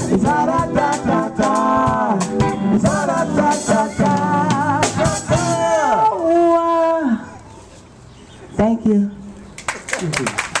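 Live band with a woman singing lead over electric guitar, drum kit and keyboard, finishing a song: the last sung note is held and stops about seven seconds in. After a short lull, a brief vocal phrase comes near the end.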